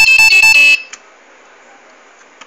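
Piezo buzzer on the monitoring board beeping loudly in a run of short, high-pitched bursts that stop about three quarters of a second in.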